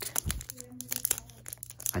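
Foil wrapper of a Pokémon TCG booster pack crinkling and crackling in quick, irregular crackles as fingers work at its top edge to tear it open.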